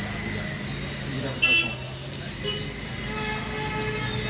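Traffic noise with a short, loud horn toot about one and a half seconds in.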